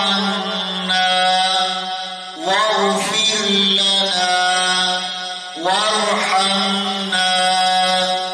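A man reciting Quranic Arabic in a slow, melodic chant, holding long steady notes. Fresh phrases begin about two and a half seconds in and again near six seconds. He is reading a verse aloud to show where its stop signs fall.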